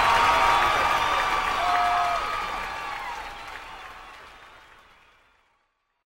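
Applause fading out steadily, dying away to silence about five seconds in.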